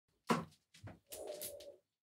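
Handling noises as two audio cables with quarter-inch jack plugs are picked up off an office chair: a sharp knock, a lighter tap, then a short creaking rustle.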